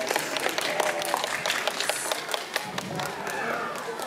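Spectators clapping in quick, scattered claps, with voices calling out.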